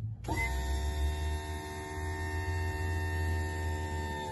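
Small diesel engine of a utility vehicle idling steadily, a low even hum, with background music of long held tones over it.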